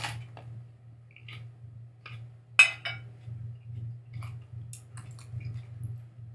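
Close-up biting and chewing of a raw green chili pod dipped in chili paste: a sharp crunch at the first bite, one loud crunch about two and a half seconds in, and small wet crunching clicks in between. A steady low hum sits underneath.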